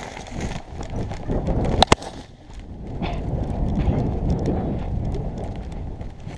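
Rumbling handling noise from a camera carried on the move, with irregular knocks and a sharp double click about two seconds in.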